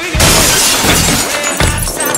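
Glass shattering under gunfire, a sudden loud crash just after the start that spreads and fades over the next second or so, with background music underneath.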